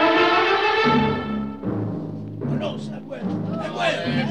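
Short orchestral music cue with timpani: a held chord that ends about a second and a half in, over low drum notes, of the kind used to bridge scenes in a radio drama.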